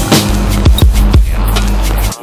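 Electronic music: sharp drum hits over a long held bass note.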